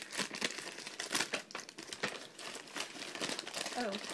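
A paper bag crinkling and rustling in irregular crackles as a hand rummages inside it and pulls an item out.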